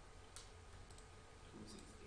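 Near silence, with a few faint, sharp clicks: one about a third of a second in, a fainter pair about a second in, and a small cluster near the end.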